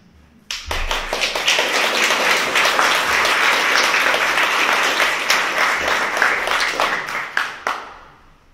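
Audience applauding, starting suddenly about half a second in and thinning to a few last claps near the end.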